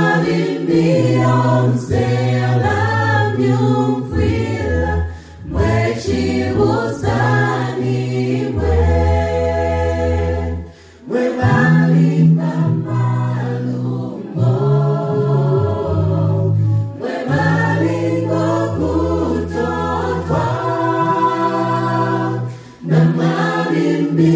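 Gospel vocal group of men's and women's voices singing in harmony, unaccompanied, with a low bass line holding long notes under the upper parts. The phrases break off briefly three times for breaths.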